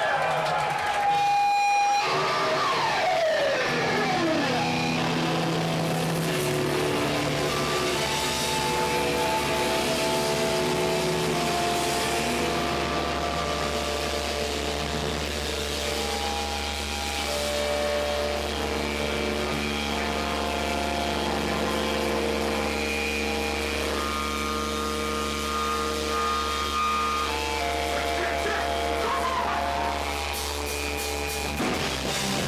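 Hardcore punk band playing live at full volume: distorted electric guitars and bass holding long, sustained notes and chords over a steady low drone, with a guitar sliding down in pitch a few seconds in.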